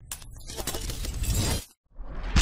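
Logo-intro sound effect of shattering debris: a dense rush of small cracks that grows louder for about a second and a half, then cuts off suddenly.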